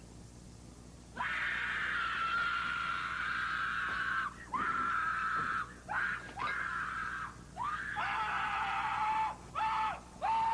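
A person screaming: one long, high-pitched scream of about three seconds, then four shorter screams in quick succession, the later ones lower in pitch.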